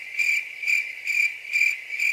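Cricket chirping: a lone high-pitched trill pulsing about four times a second, with nothing else beneath it. It starts and stops abruptly at edit points, like an inserted 'crickets' sound effect.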